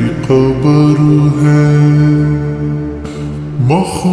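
Devotional naat singing, slowed down with heavy reverb: a voice holds long, steady notes, then slides upward in pitch into the next phrase near the end.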